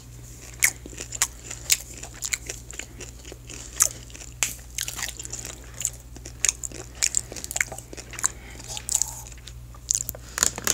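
Close-miked chewing of popcorn: irregular sharp crunches, several a second, with a steady low hum underneath.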